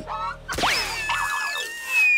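Cartoon sound effects as a sea blob is flung into the air: a short squeak, then about half a second in a quick rising whistle, followed by held, wavering whistle tones, with a falling whistle starting at the very end.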